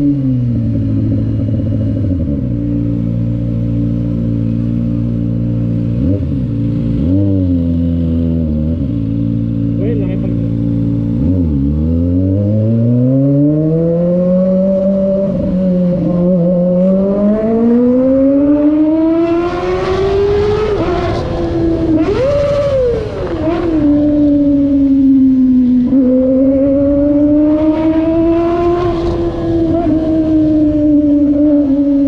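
Kawasaki sport bike engine holding a steady low pitch, then climbing and falling through the revs as the bike pulls away, loudest and harshest about twenty seconds in.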